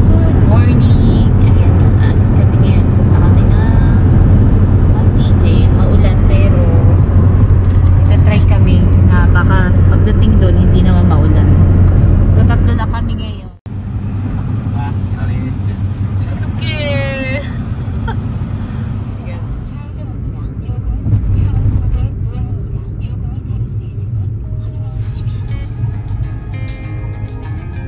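Car on the road: loud, steady road and wind rumble for about the first thirteen seconds, then a sudden cut to quieter road noise heard inside the cabin.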